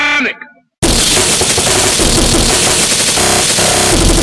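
A sampled voice's last word cuts off into a brief dead gap. About a second in, a loud, distorted breakcore/gabber track comes in: dense, rapid-fire electronic drums over a wall of noise that fills the whole range.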